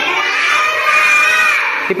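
A group of schoolchildren shouting a reply together in unison, one drawn-out chorus call that breaks off just before the end.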